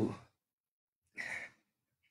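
A man's exclaimed "oh" trailing off, then one short breathy sigh about a second later.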